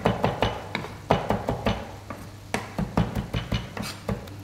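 Chef's knife chopping parsley on a wooden cutting board: quick, uneven knocks of the blade against the board, several a second, with a short pause about halfway through.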